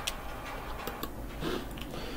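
A few faint, short clicks spaced unevenly over a steady low hum and hiss.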